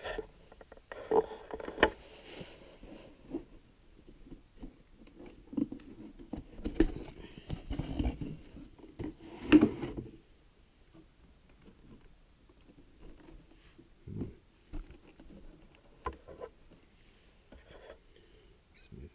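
A cardboard toy box being handled and moved about on a table: irregular taps, knocks and rustles, busiest in the first ten seconds and then only occasional.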